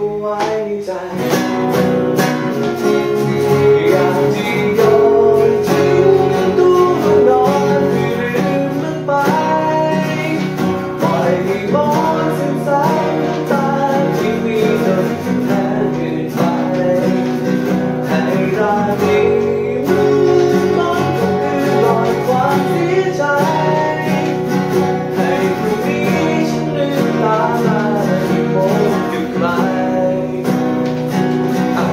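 Three acoustic guitars playing a song together, a steady run of plucked notes and chords.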